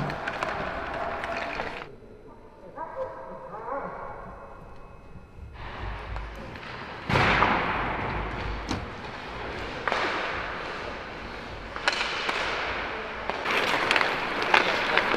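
Ice hockey practice on a rink: skate blades scraping the ice and sticks and pucks clacking in sharp knocks, with voices calling in the background. The sound drops away briefly early on and comes back louder about seven seconds in.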